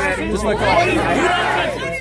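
Speech: a man talking close by over the overlapping chatter of a crowd.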